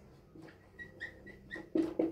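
Marker squeaking on a whiteboard as letters are written: a quick run of short, high squeaks about a second in.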